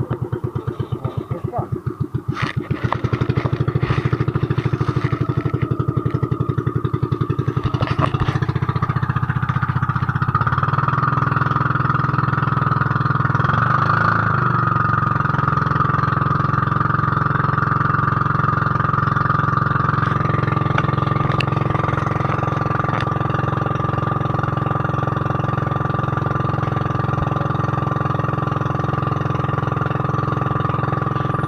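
Engine of a motorised outrigger boat (bangka) running under way, with slow, distinct firing beats for the first several seconds. About eight to ten seconds in it opens up into a steadier, faster run that holds to the end.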